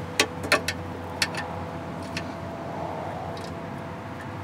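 A metal wrench clinking and knocking a few times against machine parts as it is worked onto a bolt in a cramped engine bay, the clicks sparse and irregular in the first half and fewer after, over a steady low hum.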